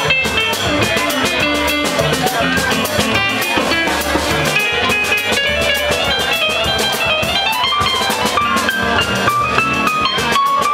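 Latin jazz played live: an electronic keyboard playing fast runs of piano notes over a walking low bass line and drums, without a break.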